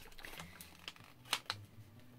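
Paper envelope being handled and its sticker seal peeled open: faint rustling of paper with a few short, sharp clicks, the loudest a little past halfway.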